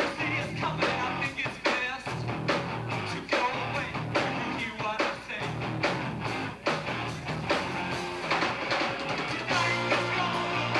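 A rock band playing live: distorted electric guitars and a drum kit, with a man singing over them.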